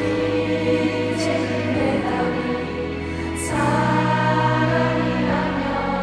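Male crossover vocal group singing live with musical accompaniment through a concert sound system, holding long notes in harmony; the notes change about three and a half seconds in.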